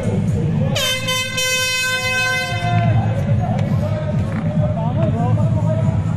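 An air horn sounds one steady blast of about two seconds, starting about a second in, over crowd voices and music.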